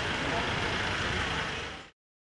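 Street ambience: traffic running with people talking in the background. It cuts off abruptly near the end.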